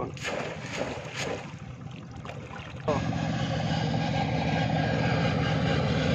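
A few light clicks, then about three seconds in an engine comes in suddenly and runs steadily, growing slowly louder.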